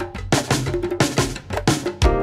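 Band music led by drums and percussion: a drum groove of sharp, quick hits over a low bass.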